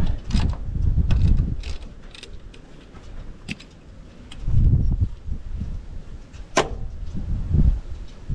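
Scattered metallic clicks and taps of a spanner on the mounting bolts of a Massey Ferguson 65's starter motor as it is bolted back on, the loudest about six and a half seconds in, over bursts of low rumble.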